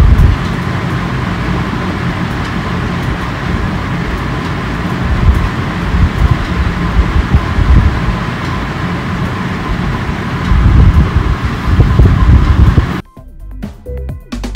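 Wind buffeting the microphone of a motorcycle rider cruising at about 65 km/h, with road and engine noise underneath; the gusts grow louder over the last few seconds. About a second before the end it cuts off abruptly to background music with a beat.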